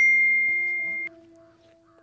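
Mobile phone message notification chime: a clean electronic two-note tone, the second note higher, fading out within about a second and a half.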